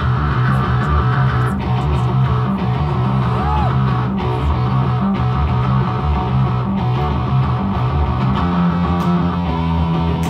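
Live rock band playing loudly: electric guitar and bass guitar, with sustained low bass notes that shift in pitch.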